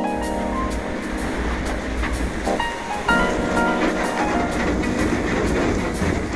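Background music with a keyboard melody over a low, steady rumble and crunch of a tugboat's steel hull breaking through thick sea ice.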